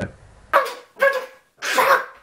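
A man's loud, harsh yells of frustration: three short outbursts in quick succession.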